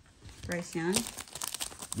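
Foil wrapper of a 2023 Contenders Football trading-card pack crinkling as fingers grip its crimped top to tear it open, a dense run of crackles in the second half. A short spoken sound comes about half a second in.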